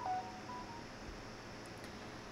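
A few short, faint electronic beep tones at two pitches in the first second, then quiet room tone.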